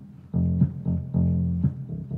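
Funky bass line played on a synthesizer keyboard's bass sound: low held notes with sharp attacks repeating in a steady rhythm, starting after a short pause.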